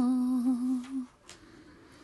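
A woman's voice holding the closing low note of a chanted Tibetan Buddhist prayer, wavering slightly, then trailing off about a second in.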